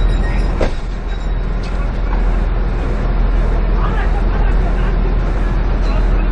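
Vehicle engine idling with a steady low rumble, a sharp knock about half a second in, and men's voices faint in the background.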